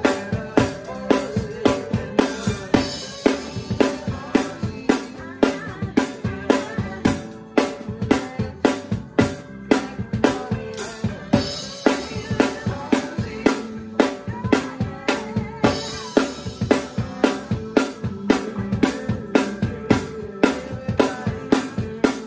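Acoustic drum kit played in a steady rock groove of bass drum and snare, with cymbals ringing out over it three times.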